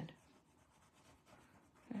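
Faint scratching of a white chalk pencil shading on a black drawing tile.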